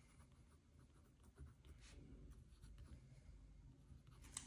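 Pen writing on a paper sheet: faint, short scratching strokes.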